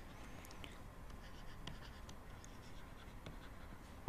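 Faint scratching of a pen handwriting a word, with a few light ticks from the pen strokes.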